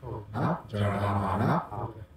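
A man's voice with long, drawn-out vowels at a low, steady pitch, in two stretches, the second longer and ending in a rising glide.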